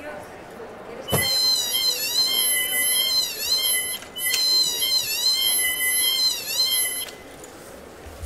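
Mandrake prop screaming as it is pulled from its pot: a high, wavering shriek that starts about a second in, breaks off briefly halfway through, and starts again before stopping near the end.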